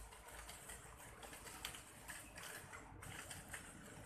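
Faint outdoor background noise: a steady low rumble with light, scattered clicks.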